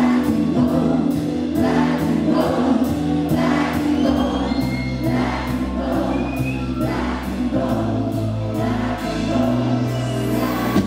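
Live electronic pop song played over a PA and heard from the audience: a male voice singing over sustained synth bass and a steady beat of about two strokes a second. A deeper bass note comes in about four seconds in.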